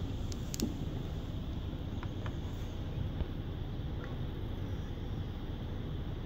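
Steady low background hum with a few faint clicks, from the HP EliteBook 8540W laptop being handled as its lid is opened and it is switched on.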